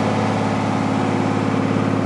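Asphalt paver's engine running steadily at a constant speed, a continuous low hum.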